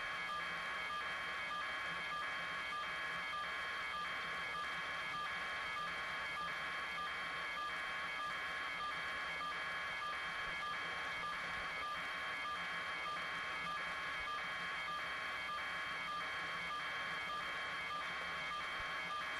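A steady pulsing electronic beep, about two pulses a second, over radio hiss.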